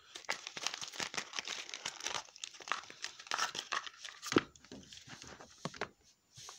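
Plastic wrestling action figures handled and knocked about right at the phone's microphone: dense, irregular rustling and clicking, with one louder knock a little past four seconds in.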